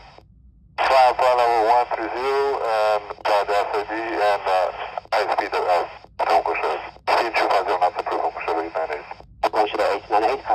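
Air traffic control radio voice transmissions received on an AM airband frequency and played through the small speaker of a Yaesu FT-60 handheld transceiver, with a thin, narrow-band radio sound. The channel is quiet for under a second at the start, then the talk runs in several transmissions separated by short breaks.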